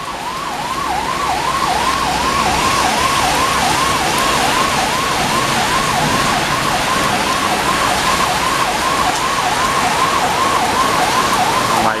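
A siren sounding a fast repeating yelp, about two rising-and-falling sweeps a second, over the steady noise of heavy rain.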